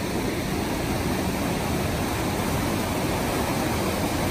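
East Inlet, a mountain creek, rushing steadily in whitewater over rocks and fallen logs.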